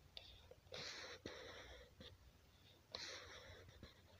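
Faint whispering: two breathy stretches, each about a second long, without a clear voiced pitch.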